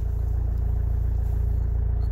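Opel Astra H engine idling steadily, a low even hum.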